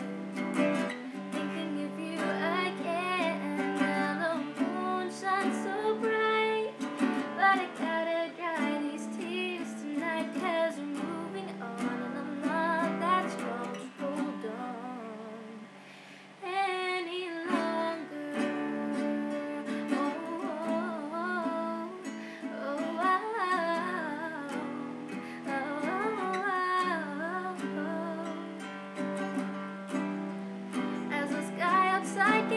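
A woman singing to her own strummed acoustic guitar, a beginner's playing. About halfway through the sound thins out for a couple of seconds, then the guitar and voice come back in.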